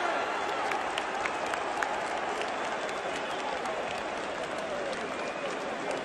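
A football stadium crowd clapping: a dense patter of applause from thousands of fans, with scattered voices, as a chant dies away at the start. A few sharper claps stand out near the start, close by.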